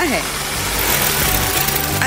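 Corded electric hammer drill running steadily as it bores into a wall.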